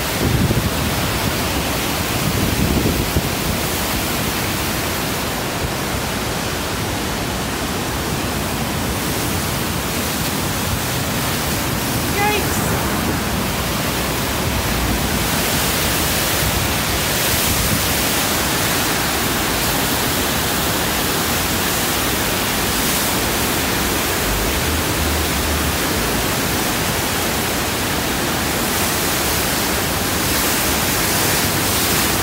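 Flood-swollen river rushing through rapids just below a bridge: a steady, loud rush of churning whitewater.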